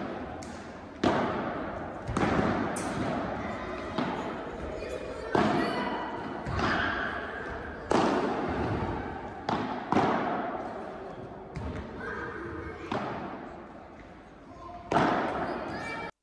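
Padel rally: the ball being struck by rackets and bouncing off the court and walls, about nine sharp hits at uneven intervals, each ringing out in a large reverberant hall. Players' voices are heard between shots.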